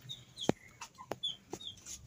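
Chickens clucking, with short high chirps, and two sharp clicks about half a second and a second in.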